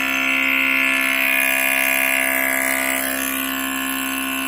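Electric vacuum pump running steadily while it degasses epoxy resin under a homemade vacuum lid: a constant hum with a high whine over it, easing slightly near the end.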